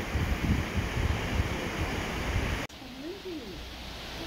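Wind buffeting the microphone over the rushing water of a cruise ship's churning wake, a fluctuating rumbling noise. About two and a half seconds in, it cuts off abruptly to a much quieter hiss.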